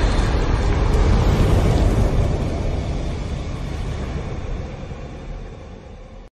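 Deep, rumbling sound effect of an intro logo animation, slowly fading out over several seconds.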